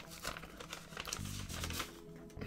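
Paper envelope being opened and its contents handled: rustling and small crinkling clicks of paper, with a short low hum a little over a second in.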